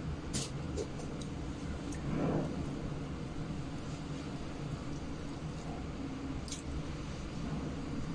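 Quiet sounds of a person eating rice with her fingers from a plate: a few soft clicks and mouth noises over a steady low room hum, with a brief murmur about two seconds in.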